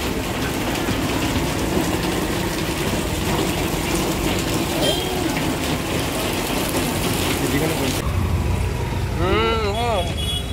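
Heavy rain pours down steadily. About eight seconds in, it cuts to a low rumble with a voice over it.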